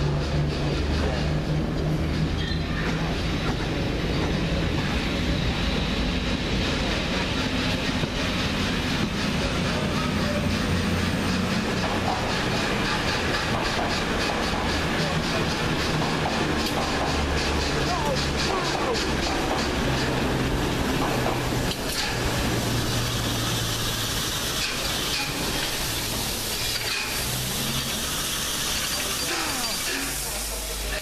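LMS Princess Coronation Class steam locomotive 46233 Duchess of Sutherland running light and slowly, tender-first, past the platform, with a steady low drone underneath and people talking on the platform.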